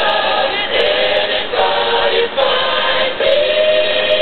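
Music: a choir singing held notes that change every second or so, settling into one long held chord near the end.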